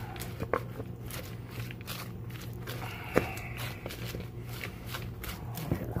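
A fork tossing tuna salad with shredded lettuce and carrots in a bowl: quick, irregular rustling and crunching of the leaves, with one sharper click about three seconds in. A steady low hum runs underneath.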